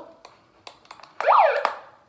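A few clicks from a handheld megaphone's controls, then just over a second in a short, loud siren whoop from its speaker, the pitch sweeping up and back down within half a second.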